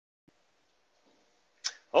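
Near silence on a call line, with one faint tick shortly in; a man's voice starts near the end.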